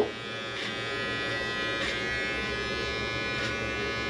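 Electric hair clippers buzzing steadily while cutting and blending hair at the side of the head.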